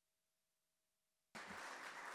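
Near silence with a faint steady hum. About 1.3 seconds in, a microphone opens suddenly onto the hall's room noise, with a low thump just after.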